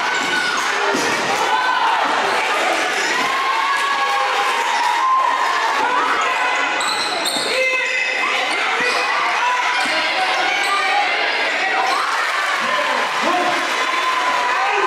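Live sound of basketball play on a gym floor: the ball bouncing, with voices and other game noise in the echoing hall.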